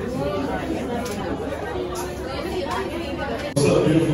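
Indistinct chatter of many overlapping voices in a crowded room, cutting abruptly near the end to louder talk.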